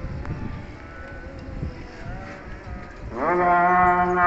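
A man's chanting voice: a pause with only faint background noise, then about three seconds in he starts a long, loud held note.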